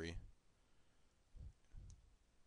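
Near silence with two faint low knocks and a small click: a stylus tapping a pen tablet while writing by hand.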